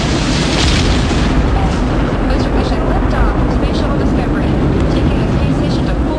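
Space shuttle launch: a steady, loud, deep roar of the engines and boosters at ignition and liftoff, with faint voices over it.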